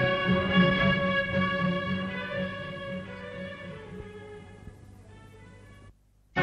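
Instrumental music under a title card, fading out gradually over several seconds and dropping to silence at the very end.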